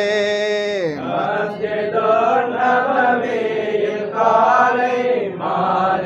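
Men chanting a Sufi devotional song in praise of the Prophet. A long held note slides down about a second in, then the next sung phrases follow.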